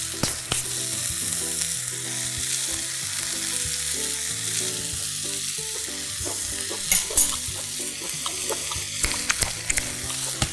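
Vegetables frying in butter and garlic in a pan, a steady sizzling hiss, with a few sharp clicks about seven and nine seconds in.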